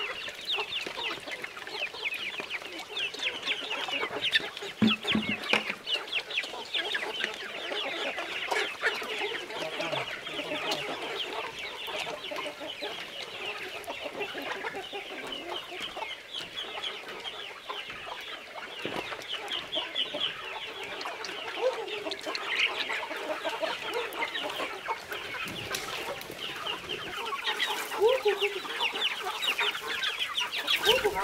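A large flock of free-range chickens clucking and calling without pause, many short calls overlapping, with a few brief knocks among them.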